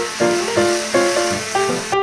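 Instrumental background music, a run of single pitched notes, with a steady hiss laid over it that cuts off suddenly near the end.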